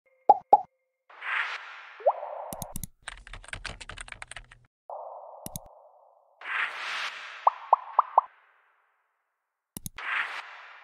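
Animated interface sound effects: two quick pops, a swoosh with a rising bloop, then about a second and a half of fast keyboard typing clicks. A single mouse click and more swooshes follow, with four short rising blips near the end.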